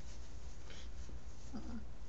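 Hands and sleeves brushing and rubbing against a cotton top as she signs, over a steady low hum. A short hummed "mm" from a woman's voice comes near the end.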